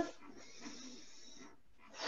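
A woman taking a slow deep breath in: a faint, airy inhale lasting about a second and a half.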